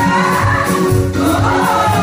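Women's gospel vocal group singing praise and worship in harmony through microphones, over a bass line and a steady beat.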